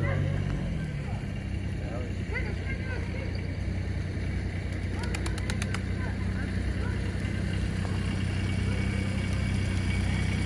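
A vehicle engine idling with a low, steady drone under faint voices, and a quick run of sharp clicks about five seconds in.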